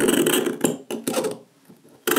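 A razor blade scraping along the metal frame of a Huawei P20 Pro, a gritty rasp made of many fast ticks that fades out about a second and a half in. The scraping sound marks the phone's sides as metal.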